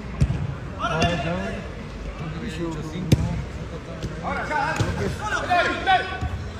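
Shouting voices from players and spectators during an indoor five-a-side football game, with a few sharp thuds of the ball being kicked; the loudest thud comes about three seconds in.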